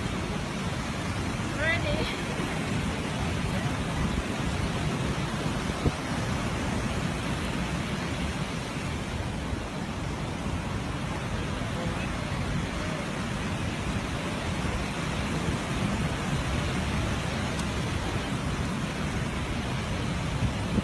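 Steady wind and surf noise, with no single event standing out.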